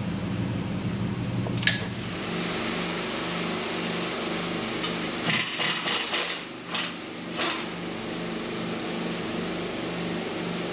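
Steady shop machinery hum with a low pulsing drone under it. A single sharp metallic click comes about two seconds in, and a run of metallic clicks and knocks comes around the middle, from hand tools working on a Jeep's front track bar and steering linkage.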